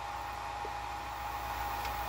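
Steady whirring of running DC-to-AC power inverters and their cooling fans, with a steady high-pitched tone and a low hum under it.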